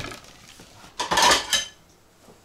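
Dishes and cutlery clattering, with one louder clatter about a second in that rings briefly.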